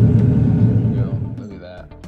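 A loud, steady low rumble that fades out about a second and a half in, leaving soft background music.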